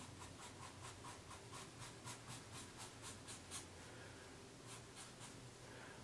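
Felt-tip Sharpie marker faintly scratching on paper in quick, short strokes, about four a second, as hair strokes of a beard are sketched. The strokes pause around four seconds in and come back briefly near five seconds.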